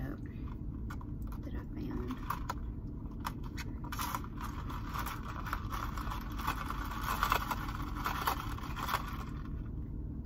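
A plastic straw stirring ice in a plastic iced-coffee cup, the ice rattling and the straw scraping in the lid, busiest from about four seconds in until near the end. Under it runs a steady low rumble inside the car.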